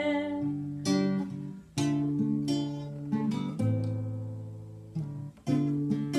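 Acoustic guitar strumming chords in an instrumental break, each chord struck and left to ring down before the next, about every one to two seconds.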